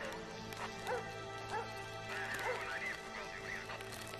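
Ominous film-score drone, with a series of short, distant calls that rise and fall in pitch repeating over it, several of them higher in the second half.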